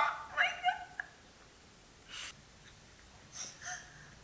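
A woman's brief high-pitched, wavering vocal sounds in the first second, caught between laughing and tears. Then near quiet with a soft breath about two seconds in and two short sniffs near the end.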